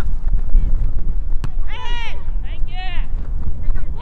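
Young players' high-pitched voices shouting two short calls across the pitch, about two and three seconds in, over a steady low wind rumble on the microphone. A single sharp knock sounds about a second and a half in.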